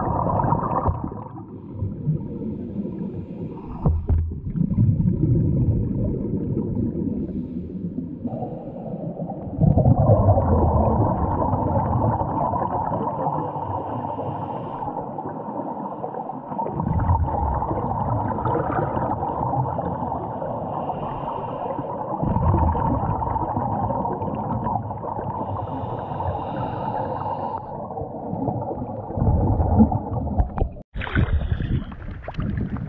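Scuba diving heard underwater through a camera housing: a diver breathing through a regulator, with bursts of exhaled bubbles rumbling every few seconds over a steady muffled hiss.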